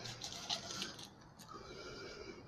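Faint, irregular rustling and crinkling of plastic zip-top parts bags being handled.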